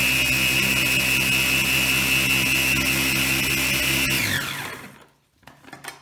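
Small electric mini food chopper running with a steady whine as it grinds dried chilies into powder, then winding down with falling pitch about four seconds in when released. A few light plastic knocks follow near the end as the lid is lifted off.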